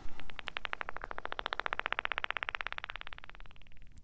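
Recorded dolphin echolocation clicks: a rapid, even train of sharp clicks that grows quicker, then fades out near the end.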